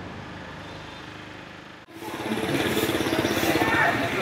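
A small truck's engine running with a steady low hum, which breaks off abruptly about two seconds in. It gives way to louder street noise with motorbike engines and faint voices.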